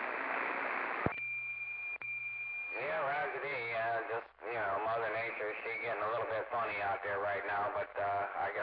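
Two-way radio receiver hiss, broken by a click about a second in and a steady high tone lasting about a second and a half, then a distant station's distorted, wavering voice coming in over the radio.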